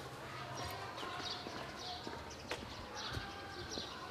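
Footsteps on a paved street, with repeated short high chirps of small birds and a sharp click about two and a half seconds in.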